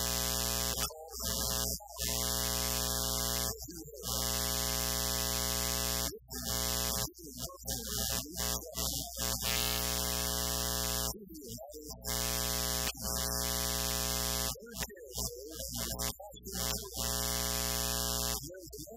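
Loud steady electrical buzz, one unchanging pitch with many overtones and a hiss on top, cutting in and out irregularly every second or two; a man's voice is heard faintly in the gaps.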